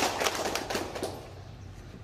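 A small group clapping by hand, a short round of applause that thins out and fades about a second in.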